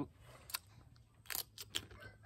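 Crisp crunching of raw cucumber being chewed: about four short sharp crunches, the loudest a little under halfway through.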